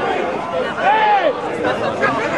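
Spectators' voices at a football pitch: overlapping talking and calling out, with one drawn-out shout about a second in.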